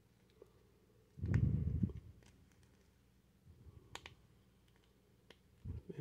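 Small plastic action-figure parts handled in the fingers: a brief muffled rubbing about a second in, then a few faint, light plastic clicks as the emblem is pressed into the chest armor plate and snaps into place.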